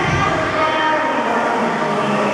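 Loud, steady din of a large indoor hall: a constant rushing noise with mixed voices and music over it.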